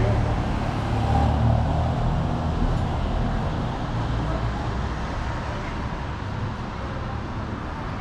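Street traffic noise with a low engine rumble from a vehicle close by, loudest in the first few seconds and slowly fading.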